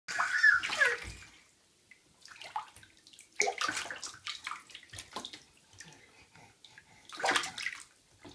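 A baby gives a short high squeal that slides down in pitch in the first second, then bathwater splashes and sloshes in the tub in scattered bursts, most strongly about three and a half seconds in and again near the end.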